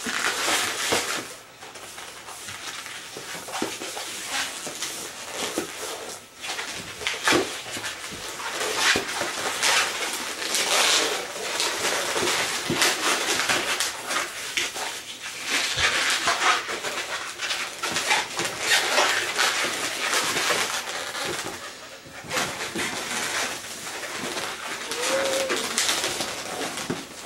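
Long latex twisting balloons squeaking and rubbing against each other and against the hands as they are twisted and locked together, in many short, irregular bursts.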